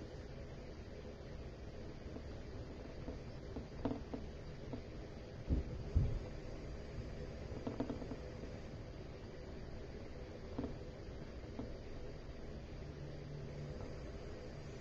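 Quiet room tone with faint, scattered taps and two soft low thumps near the middle, the handling sounds of a paintbrush working on a canvas board propped on an easel.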